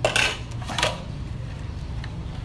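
Plates clattering and clinking together during hand dishwashing: two short bursts of clinks in the first second, over a low steady hum.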